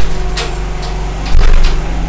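A steady low machine hum, with a sharp knock at the start and a louder burst of knocks and crackle about one and a half seconds in.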